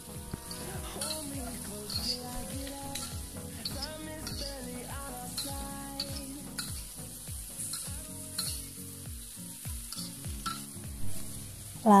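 Fried tofu cubes and sliced green chilies sizzling in a wok as they are stir-fried, a spatula scraping and turning them against the pan.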